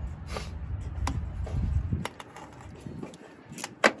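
A few light metallic clicks and taps as a socket tool on an extension loosens a worm-drive hose clamp on a metal intake pipe, over a low rumble that fades about halfway through.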